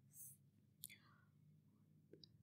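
Near silence: a faint steady hum, with a soft breath near the start and a small click a little before the middle.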